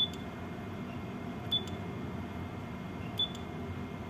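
Three short high beeps, each with a click, about a second and a half apart: the Furuno ECDIS console's key-press beep as corner points of a user-chart area are set. A steady low hum runs underneath.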